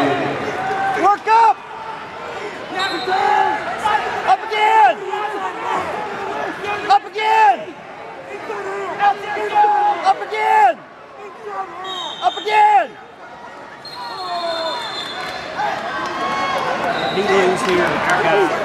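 Coaches and spectators shouting short calls across a large arena, with several sharp, loud peaks standing out.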